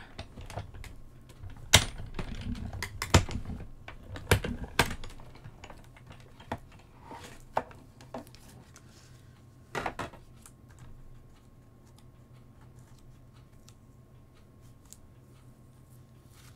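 A hand-cranked die-cutting machine drawing a plate sandwich with metal dies and cardstock through its rollers: a low rumble with sharp clacks over the first five seconds. This is followed by a few separate clacks as the plastic cutting plates are lifted apart.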